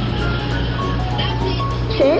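Background music: a light, jingly melody of short held notes over a steady low bass.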